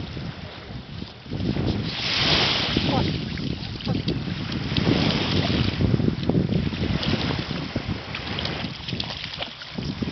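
Wind buffeting the microphone, with small waves washing onto the shore in soft rushes every few seconds.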